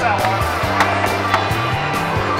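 Rubber balls rolling and bouncing along the lanes of an arcade ball-rolling alley game, with two sharp knocks a little after half a second apart, over steady arcade music.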